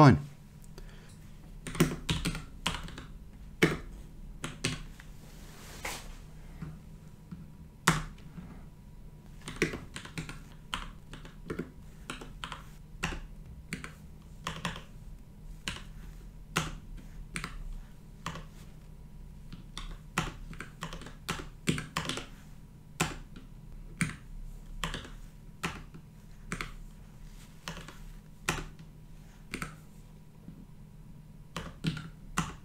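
Computer keyboard being typed in short bursts of keystrokes separated by pauses, as brief commands are entered one after another. A faint steady low hum runs underneath.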